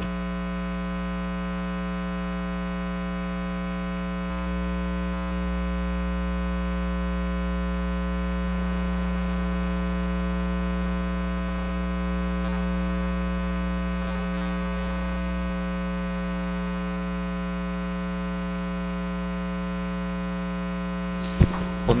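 Steady electrical mains hum with a buzz of many even overtones, carried on the room's microphone and sound system, unchanging throughout.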